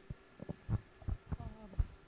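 Soft, low thumps of a handheld microphone being handled and lowered, about six in two seconds, with a brief murmured voice sound about a second and a half in.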